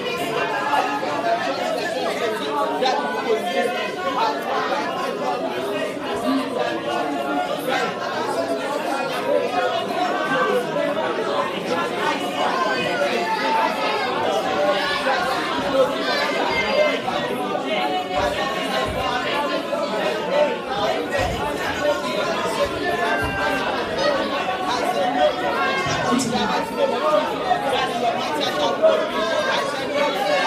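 A congregation praying aloud all at once in a large hall: many overlapping voices with no single speaker standing out.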